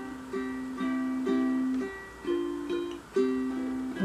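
Cordoba 30T all-solid mahogany tenor ukulele played in chords, with a new chord struck about every half second and ringing on between them.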